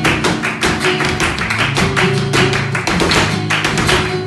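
Flamenco footwork (zapateado) by a male dancer's heeled shoes on a wooden stage, a rapid run of sharp strikes, over palmas hand-clapping and flamenco guitar playing por tangos.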